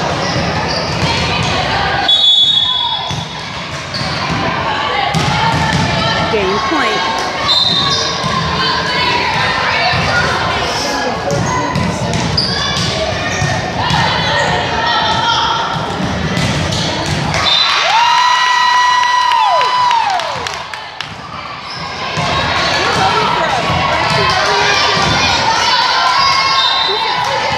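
Volleyball being played in an echoing gym: ball hits and thuds over a constant murmur of spectators talking and calling out. Short high whistle blasts come near the start and again a few seconds later, and a long steady high-pitched sound is held for about two seconds two-thirds of the way through.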